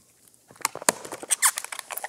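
Latex balloon squeaking and creaking as it is twisted into a balloon dog: a quick run of short rubbery squeaks starting about half a second in.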